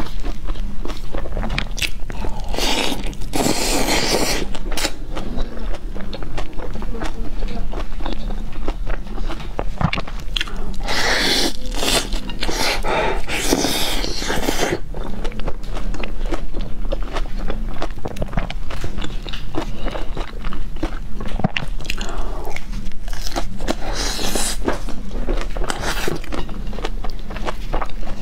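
Close-miked biting and chewing of crisp-crusted pizza: many small crunches and wet mouth sounds, with louder spells of crunching a few seconds in, for several seconds in the middle, and near the end. A steady low hum runs underneath.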